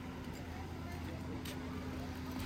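Outdoor street ambience: indistinct voices over a steady low hum, with one sharp click about one and a half seconds in.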